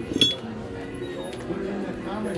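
A sharp metallic clink about a quarter second in, with a brief ring, then a fainter clink: a metal belt buckle knocking against other metal items as it is picked up off a table.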